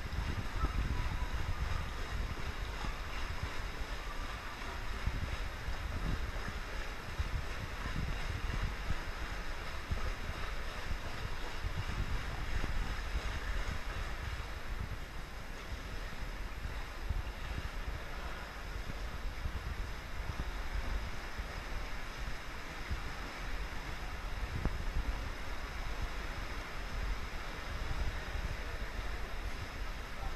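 Steady, rumbling swimming-pool ambience: water lapping in the poolside overflow gutter, mixed with wind and handling noise on the microphone of a camera carried along the pool edge.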